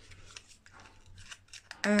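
Faint rustles and light clicks of a small cardstock-and-paper booklet being handled, closed and slid into a card box, ending in a woman's 'um'.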